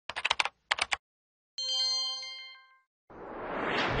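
News-open sound effects: two quick runs of sharp clicks, then a bright chime chord that rings for about a second and fades. Near the end a rising whoosh swells up.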